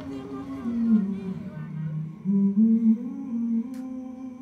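A voice humming a slow, low melody in a few held notes that step down and then climb back up, over a soft sustained tone. A single sharp click sounds near the end.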